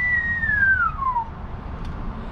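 A man whistling one long note that jumps up, holds high, then slides steadily down in pitch and fades out a little over a second in.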